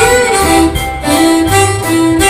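A live band plays an instrumental passage on electric guitars, bass, drums and keyboard, with a lead line bending in pitch over a steady beat.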